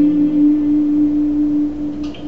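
Acoustic guitar with a single low note left ringing, its brightness fading within the first half second and the note slowly dying away.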